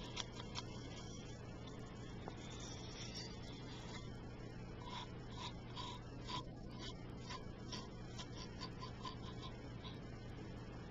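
Soft, irregular close-up taps and clicks, a few a second, thickening about halfway through, over a steady low hum and hiss from a noisy home recorder.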